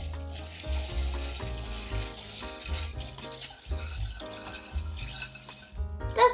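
Wire whisk churning plastic Lego bricks in a glass mixing bowl: a continuous clatter and clinking of bricks against the glass, over background music with a moving bass line.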